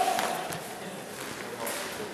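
A shouted call dies away in a reverberant hall, leaving faint voices, footsteps and a couple of light taps while the bout is halted.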